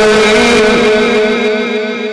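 A Quran reciter's voice in the mujawwad style, holding one long steady note at the end of a phrase, amplified through the mosque's sound system with a heavy echo. The note fades away in the second half, trailing repeated echoes.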